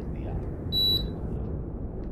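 A single short, high electronic beep from an air conditioner answering its remote control, about three-quarters of a second in, over a low steady background rumble.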